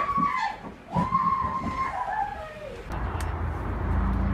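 A person's drawn-out wordless cries, one long call falling in pitch. About three seconds in this cuts to a steady low outdoor rumble.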